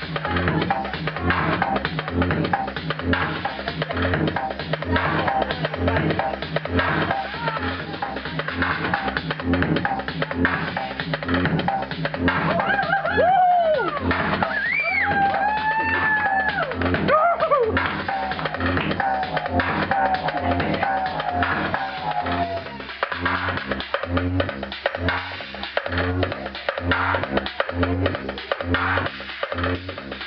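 Minimal techno DJ mix playing loud over club speakers, with a steady kick drum about twice a second. About halfway through, swooping synth sounds arch up and down, followed by a run of short stepped notes.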